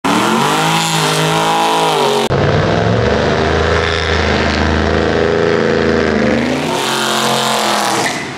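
A car engine revving, its pitch rising and falling. An abrupt cut about two seconds in switches to a second, deeper-running stretch of revving.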